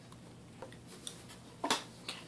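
A few faint, light clicks and taps from small objects being handled, over quiet room tone.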